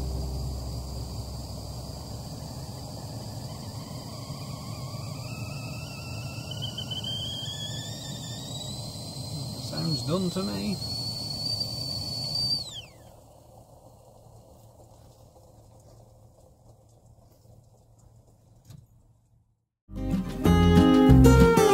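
Stainless stovetop whistling kettle on a small camping gas stove coming to the boil. The whistle starts about four seconds in and climbs steadily in pitch over a steady low rush, then cuts off suddenly about thirteen seconds in.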